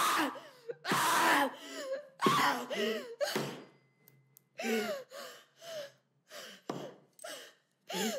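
A woman's hysterical, gasping outbursts of laughter breaking into sobs. Loud long bursts in the first few seconds, then shorter, quieter ones.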